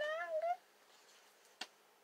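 A woman's drawn-out, high-pitched vocal sound, the tail of a laughing "yeah", rising slightly in pitch and ending about half a second in; then faint room tone with a single sharp click a little past the middle.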